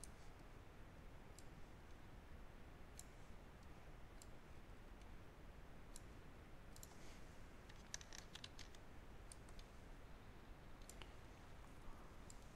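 Faint computer mouse clicks, scattered singly, with a quick cluster of them about two-thirds of the way through, over quiet room tone.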